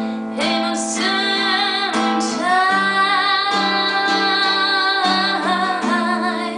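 A woman singing long held notes, without clear words, over a strummed classical guitar.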